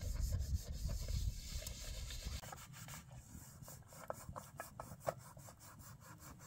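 Hand scrubbing of a pot or dish: a run of short, repeated rubbing strokes, heard over a low rumble that stops a couple of seconds in.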